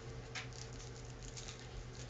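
Quiet room tone with a steady low electrical hum, broken by one faint click about a third of a second in.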